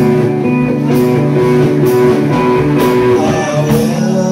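Live rock band playing: amplified guitars over a drum kit, with a cymbal hit about once a second.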